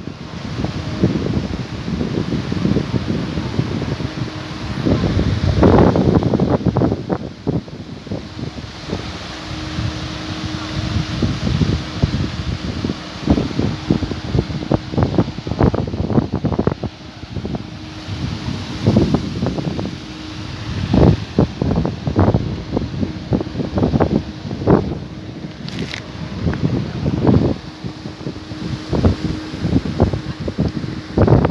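Wind buffeting the microphone in irregular gusts, over a steady low hum that fades in and out, with faint voices now and then.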